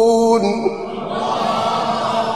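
A man's Quran recitation holding one long sung note, which ends about half a second in. A crowd of listeners then calls out together, swelling and slowly fading, the audience's response at the close of a phrase.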